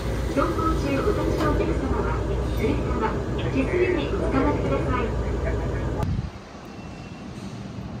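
Low, steady rumble of an electric light-rail tram running, heard from inside, with a person talking over it. About six seconds in it cuts to a quieter, even hum of city traffic.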